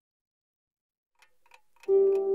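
Silence, then a twin-bell alarm clock ticking fades in about a second in, at about four ticks a second. Just before the end, music comes in loudly over the ticking with sustained notes.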